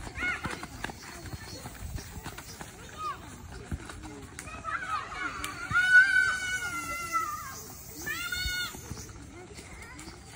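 Young children shouting and squealing while they play football, with one long high-pitched shout about six seconds in and another short high call near eight and a half seconds.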